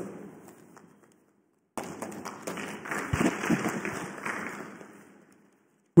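Applause from an audience in a hall, starting suddenly and fading out over about three seconds.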